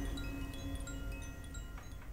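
Scattered, tinkling chime notes ringing at many different pitches, fading away as the closing music ends.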